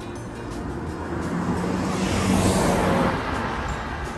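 A car passing the bicycle from behind: its tyre and engine noise swells to a peak just past the middle and then fades as it pulls ahead.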